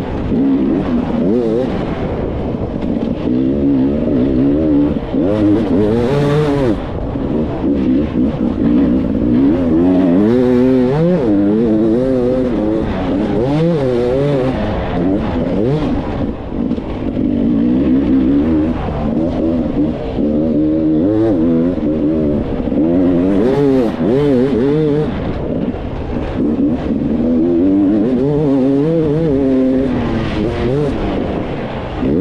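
Enduro motorcycle engine under hard riding, its pitch rising and falling over and over as the throttle opens and closes on a rough dirt trail, heard close up from the rider's helmet camera.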